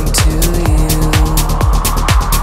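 Melodic techno: a steady four-on-the-floor kick drum at about two beats a second with ticking hi-hats, a held synth note that bends up and back down about half a second in, and a noise sweep rising underneath.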